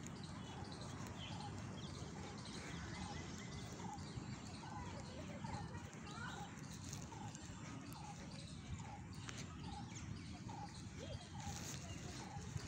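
Outdoor park ambience: a bird calling in short repeated notes, about two a second, with other birds chirping faintly over a low steady rumble.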